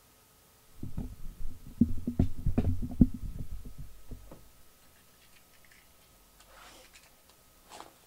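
Cardboard trading-card boxes being handled and set down on a desk mat. About a second in comes a cluster of low thumps and knocks with a few sharp clicks, lasting about three seconds. It is followed by a faint rustle and a single click near the end.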